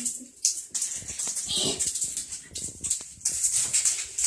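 Hand swishing and splashing water in a bathtub, in short irregular bursts.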